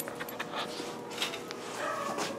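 A dog playing with a plush toy held by a person, with a run of short, sharp clicks and scuffles.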